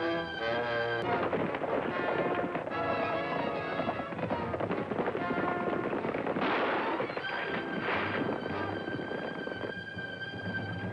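Western film score music over a volley of gunshots and the hoofbeats of galloping horses, the shots thickest through the middle stretch while the held music notes drop back.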